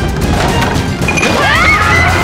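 A crash sound effect over dramatic music, with a rising pitched glide from about halfway through.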